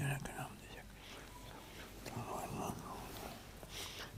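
A man murmuring faintly under his breath in short broken phrases, near the start and again in the middle, like a prayer said half-aloud.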